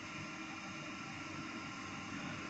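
Steady, even background hiss with a faint hum, room noise with no distinct event.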